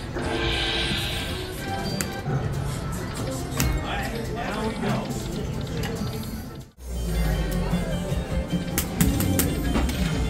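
Dragon Link slot machine game sounds: music and chimes while a win tallies up on the meter. About two-thirds of the way through, the sound breaks off abruptly. It then resumes with a steady low hum and clicking chimes from the machine, with voices murmuring in the background.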